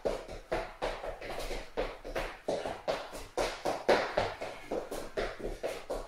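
Quick light footsteps of trainers on a hard wood-effect kitchen floor, tapping and scuffing about four times a second as a person darts in small steps around cones in a speed and agility drill.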